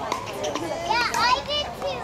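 High-pitched voices calling out and chattering, loudest about a second in, with scattered sharp clicks behind them.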